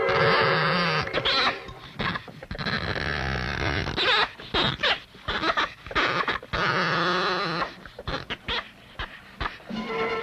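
Harsh animal calls from a tayra going after an iguana in a tree, in a run of short bursts with brief gaps, over background music.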